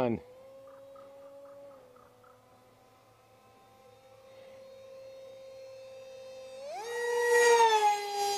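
An electric park jet's brushless motor (GepRC 2306, 2750 kV on 4S) spinning a 6x3 prop makes a thin, high whine. It is faint and distant at first and fades around two seconds in. From about the middle it builds again, then a little before the end it jumps sharply up in pitch and grows loud as the jet comes close at high throttle.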